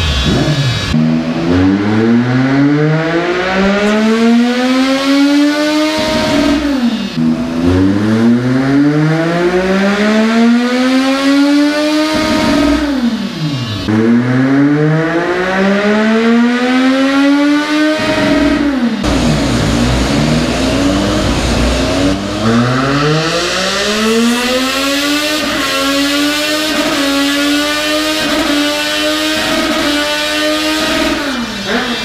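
Triumph Street Triple's three-cylinder engine on a dynamometer run, the revs climbing hard for about five seconds at a time and then falling away as the throttle shuts, about five times over.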